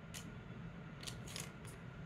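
Quiet room tone with a low steady hum and a few faint, short, high-pitched clicks, three of them close together about a second in.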